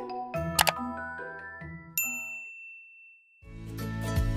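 Background music from the like-and-subscribe graphic, with a click early on and a single bright bell ding about halfway through that rings out as the music fades. After a brief gap, louder music starts near the end.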